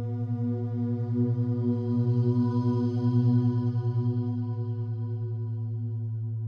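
Binaural-beats meditation music: a steady low drone under a rich sustained tone that wavers with a fast pulse, swelling to its loudest midway and then fading.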